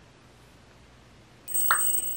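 Near silence, then about one and a half seconds in a short, bright bell-like chime, an on-screen sound effect, rings on with two steady high tones.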